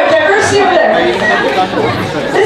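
Speech only: several voices chattering over one another, with no clear words.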